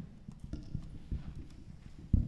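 Handling noise from a handheld microphone: irregular low thumps and rubs as it is shifted and gripped in the hands.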